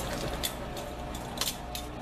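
A metal utensil stirring chicken, potatoes and carrots in sauce in a stainless steel pot, with a few knocks of metal against the pot: one about half a second in and two close together near the end.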